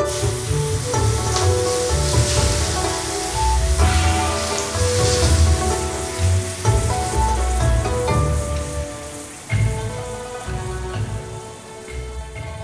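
Hot oil poured over chopped garlic, dried chilli and spring onion, sizzling, over background music with a steady bass pulse. The sizzle starts suddenly and thins out toward the end.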